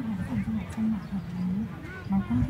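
People's voices talking in the background, with no one close to the microphone.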